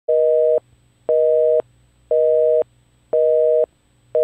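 Telephone busy signal: a steady two-tone beep sounding four times, half a second on and half a second off.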